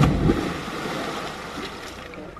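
A person plunging into deep lake water from a high cliff: one loud splash right at the start, followed by a hiss of falling spray that fades over about two seconds.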